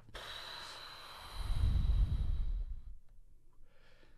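A long breathy sigh close to a microphone. It swells to a rumble of breath hitting the mic around the middle and dies away about three seconds in.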